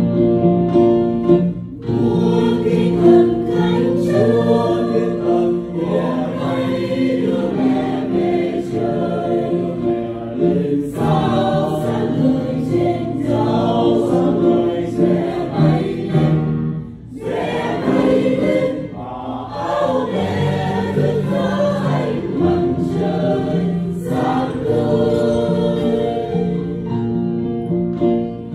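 Mixed choir of men's and women's voices singing a Vietnamese Catholic hymn in sustained chords, with a brief drop in level about seventeen seconds in.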